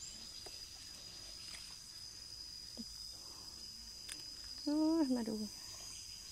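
Insects in the vegetation keep up a steady, high-pitched drone on one unbroken tone. A few faint rustles and clicks sound under it.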